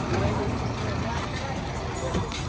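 Indistinct voices of people talking, over a low, steady rumble.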